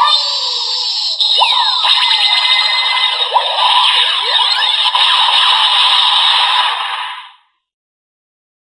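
DX Henshin Belt Gavv toy's electronic transformation sound for the Legend Gochizo: a voice call of "Tsuyoi!" at the start, then a dense synthesized jingle with swooping effects that fades out about seven seconds in.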